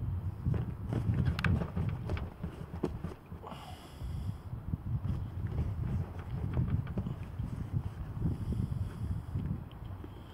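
Hands working in an angler's bait tray: scattered light clicks and knocks over an uneven low rumble.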